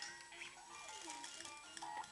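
Faint electronic jingle of short, steady notes at changing pitches, played by a baby's light-up musical activity cube.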